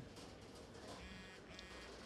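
Two short, faint electronic buzzing beeps, the first about a second in and the second just after, over near silence.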